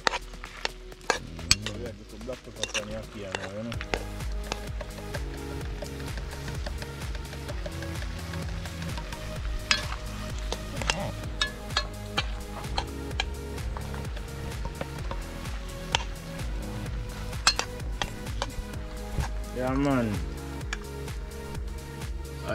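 Metal spoon stirring and clinking in a metal pot of fish and ackee frying over a wood fire, with sizzling. Electronic background music with a steady beat comes in about four seconds in and carries on over it.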